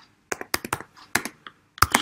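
Computer keyboard typing: a quick, uneven run of about a dozen keystrokes as a line of code is entered.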